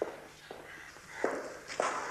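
Hooves of a horse being led at a walk across a hard floor, four separate clops about half a second or more apart.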